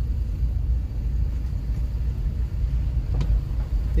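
A steady low rumble of wind on the microphone.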